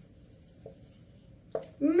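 Marker pen writing on a whiteboard, faint.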